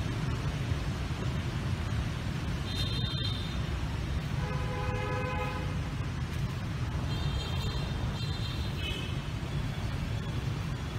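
Steady low rumble of city traffic with several short vehicle horn honks, the clearest about halfway through.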